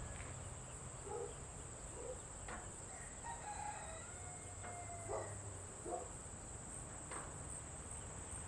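Faint chickens clucking in short, separate calls, with a rooster crowing once near the middle for about a second and a half. Underneath runs a steady high-pitched insect drone.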